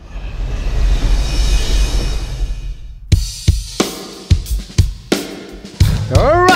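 Live band's drum kit opening a song: a cymbal swell over deep bass for about three seconds, then kick and snare hits about two a second.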